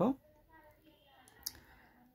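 A short, sharp click about one and a half seconds in, with a softer tick just before it, over low room noise.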